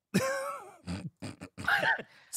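A man's voice making a few short non-word vocal sounds, the first and longest about a quarter of a second in and another near the end.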